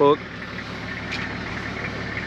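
Four-wheel drive's engine idling, a steady low hum.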